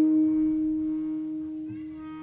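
A single musical note from the kirtan accompaniment, struck sharply and ringing on at one steady pitch while it slowly fades.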